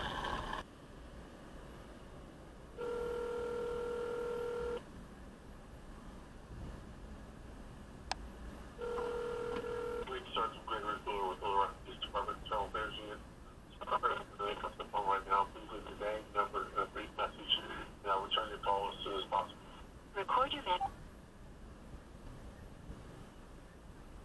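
Phone on speaker playing a North American ringback tone: one two-second ring, then four seconds of silence, then a second ring cut short after about a second. The line is ringing through at the far end. A voice then speaks over the phone's speaker for about ten seconds.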